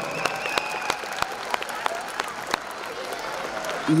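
An audience in a hall applauding: a steady patter of many hands clapping, with individual sharp claps standing out.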